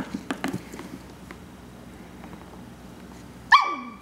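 A Shetland Sheepdog puppy gives one short, high bark near the end that drops in pitch. A few light taps come in the first second.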